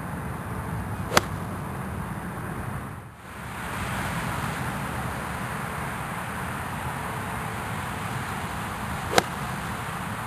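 A sharp, short click near the end as a wedge strikes a golf ball off grass, with a similar click about a second in, over steady outdoor background noise.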